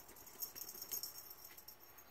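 Cat playing with a feather wand toy: faint light rattling and jingling, with two sharper taps about half a second and a second in.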